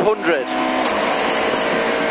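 Rally car's engine pulling hard, heard from inside the cabin with road and tyre noise, shifting up from third to fourth gear.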